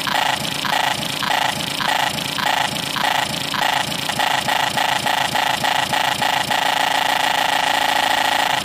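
Hardcore techno: a synth chord stabbing in time with the beat about three times a second, then held as one long sustained chord from about six and a half seconds in.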